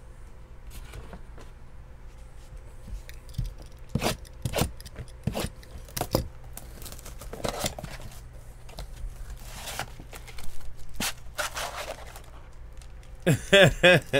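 Plastic shrink-wrap being torn and crinkled off a sealed trading-card box, with a few sharp taps before it. There is a short laugh near the end.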